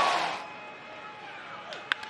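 Stadium crowd cheering that fades away, leaving a low crowd murmur. Near the end comes one sharp crack of a wooden bat hitting a baseball.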